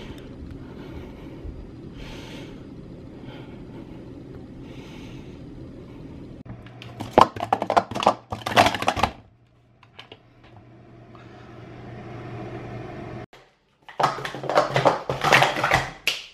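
Plastic speed-stacking cups clattering as they are rapidly stacked and unstacked on a mat: two quick runs of sharp plastic clicks, one about seven seconds in and another near the end, with a steady low hum between them.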